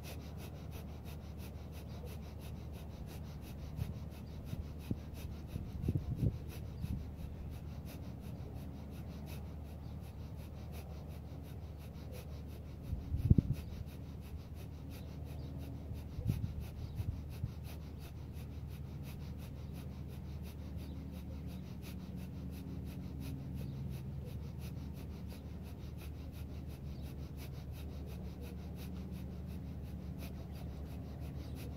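Kundalini yoga breath of fire: rapid, evenly spaced, forceful exhales through the nose with passive inhales, over a steady low background hum. A couple of louder low bumps come about six and thirteen seconds in.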